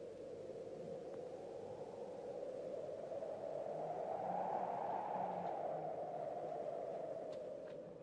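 A soft, steady rushing noise in the film soundtrack that swells about halfway through and then eases off, with faint low notes underneath.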